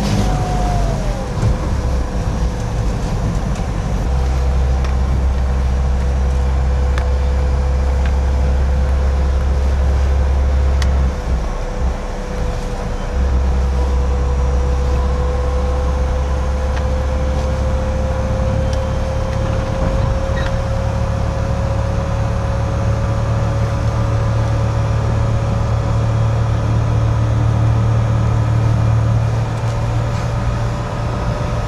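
Converted electric pickup truck driving, heard from inside the cab: a steady low road-and-wind rumble with a single thin whine from the 27-horsepower DC motor drivetrain. The whine drops in pitch about a second in, holds, then slowly rises over the second half.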